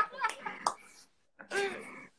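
Short bits of men's voices and laughter over a livestream call, broken by a brief gap, with one sharp click a little before the gap.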